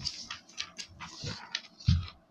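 Paper rustling and crinkling in a quick series of short crackles as a page of a printed exam booklet is handled and turned, with a dull handling thump near the end.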